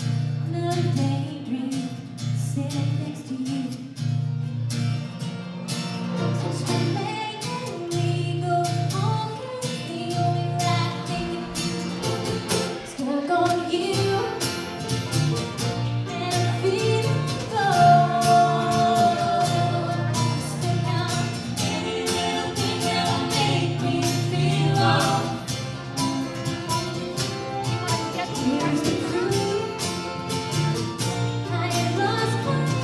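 Live acoustic band song: a woman singing lead while strumming an acoustic guitar, with the band playing along.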